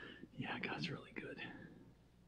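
Soft, indistinct speech, much quieter than the amplified talk around it, lasting about a second.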